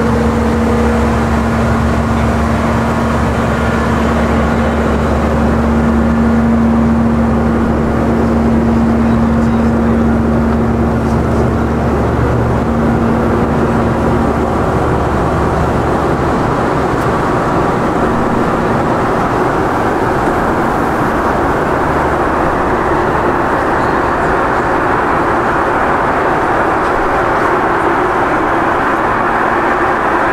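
Steady cabin noise of a Boeing 717 airliner in flight: the rush of airflow with the hum of its rear-mounted Rolls-Royce BR715 turbofans. A steady low drone is strong at first and fades about halfway through, leaving a broader hiss.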